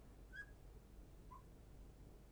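Near silence, broken by two faint, short squeaks of a felt-tip marker on a glass lightboard as short dashes are drawn: one about half a second in, a lower one just past the middle.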